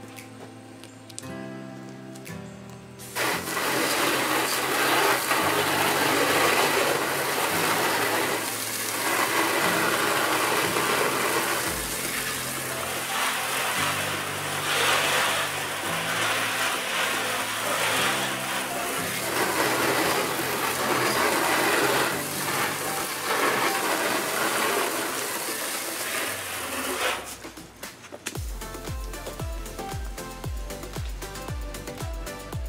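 Garden hose spray rinsing chemical cleaner off an aluminum boat pontoon, a loud steady hiss that starts about three seconds in and stops a few seconds before the end, over background music.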